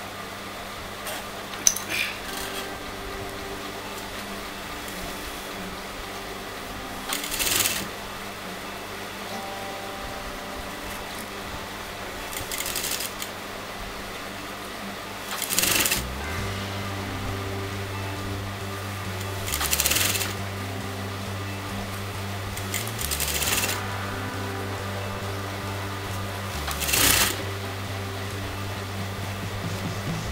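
Industrial sewing machine stitching in short runs, about six bursts of under a second each, a few seconds apart, over soft background music.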